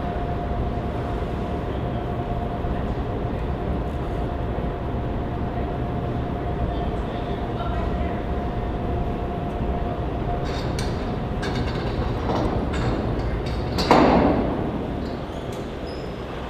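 Steady low engine rumble on a ferry's car deck, heard from inside a car, with a faint steady hum over it. From about two-thirds of the way in come scattered sharp clicks, then one louder knock that dies away over about a second near the end.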